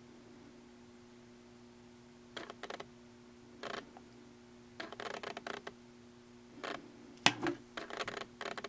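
Autofocus motor of a Nikkor 24-70mm f/2.8G lens, driven through an FTZ adapter on a Nikon Z6 and picked up by the camera's own microphone, making faint bursts of clicking and rattling as it refocuses, five or six times, over a faint steady hum. The noise is the sign of an adapted F-mount lens focusing less quietly than a native Z-mount lens.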